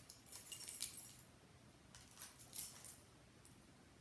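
A bunch of keys and a metal keychain clip clinking and jingling in the hands as the clip is worked onto the key ring: a cluster of light clinks in the first second, then a couple more a little past two seconds in.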